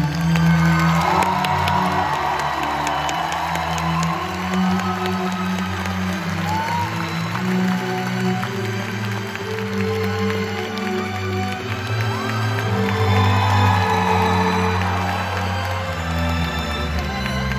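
Live orchestral music holding low sustained chords, with the audience cheering and whooping over it. The cheering is strongest about a second in and again near the end.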